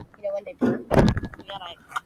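Boys' voices in short unclear bits, with two sharp thumps about half a second and a second in.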